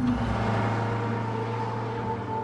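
Eerie background music holding a steady low drone note, with a faint higher tone coming in about halfway through.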